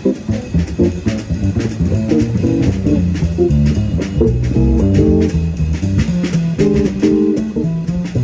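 A jazz trio playing live: a Collings Soco 16 LC semi-hollow electric guitar runs a fast line of single notes over bass and a drum kit with cymbals.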